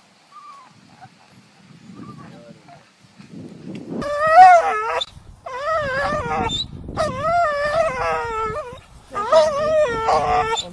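A dog giving a run of loud, wavering whining howls, each about a second long, starting about four seconds in.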